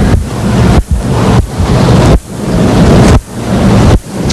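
Loud, low rumbling noise in swells, broken by sudden brief drops about every second or so.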